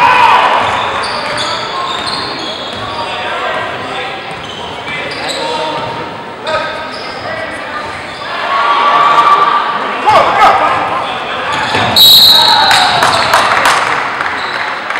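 Basketball being dribbled on a hardwood gym floor, with players and spectators calling out and echoing in a large gymnasium. The noise grows louder near the end.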